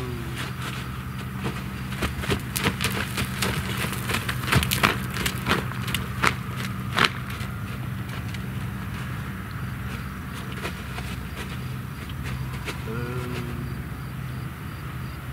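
A steady low mechanical hum, with a run of sharp, irregular clicks and crackles that is loudest between about two and seven seconds in.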